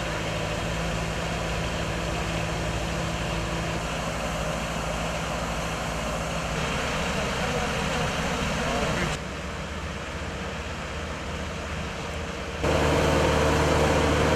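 Truck-mounted mist-blower sprayer and its pickup's engine running steadily as the rig sprays mist. The sound drops suddenly about nine seconds in. It returns louder, with a steady hum, near the end.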